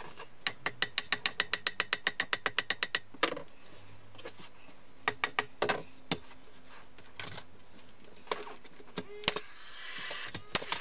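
A claw hammer tapping the edge of a chipboard loft board to knock it into place: a fast, even run of about twenty light taps, then a few separate knocks.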